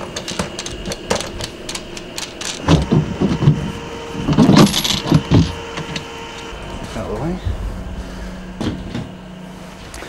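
Handling noise of a large clear plastic cover being lifted off a battery box: scattered clicks and knocks, with louder rattling clatter about three and five seconds in.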